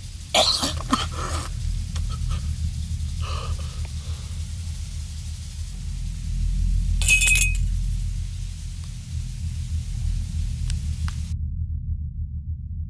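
A man coughing and choking in harsh bursts at the start, more weakly about three seconds in and once more near the middle, over a steady low rumble.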